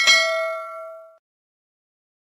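A single bell ding sound effect, struck once and ringing out with a few clear tones that fade away over about a second: the notification-bell click of a subscribe-button animation.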